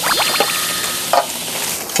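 Beef sizzling on a hot grill pan in a steady hiss, with a brief high ringing tone over the first half and a short burst a little past the middle.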